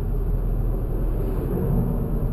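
Steady road and engine noise of a moving car, heard from inside the cabin: a low rumble with no sudden events.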